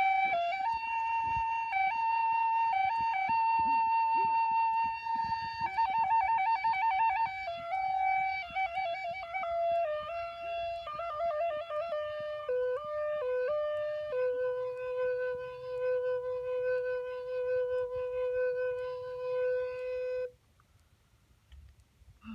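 Wooden Native American–style flute, with a block tied on, played solo: a slow melody of held notes with a wavering, vibrato-like passage about six seconds in. The notes then step down to a long low note held for about six seconds, which stops suddenly near the end.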